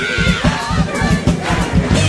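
Acoustic drum kit played in a dense, fast run of hits on drums and cymbals, with a crowd shouting and cheering over it.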